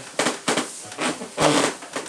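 Acoustic guitar being handled before playing: a few short, sharp knocks and brushed strings, one of which rings briefly about one and a half seconds in.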